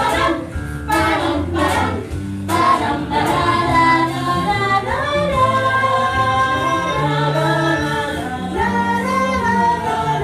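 A stage cast singing a show tune together as an ensemble, with musical accompaniment. Sharp beats mark the first couple of seconds, then longer held notes follow.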